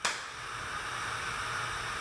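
Steady hiss of recording noise with a faint low hum, cutting in suddenly at the start.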